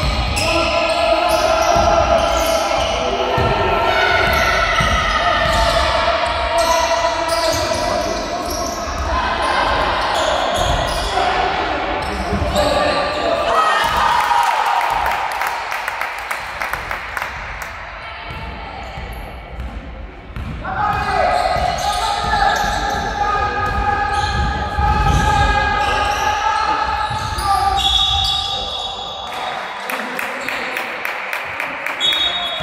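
Basketball game in an echoing sports hall: the ball bounces and shoes knock on the wooden court, under voices calling and shouting. A high whistle sounds near the end as play stops.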